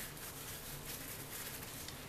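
Faint rustling as a wet, soapy wool felt piece is handled and stretched open by hand.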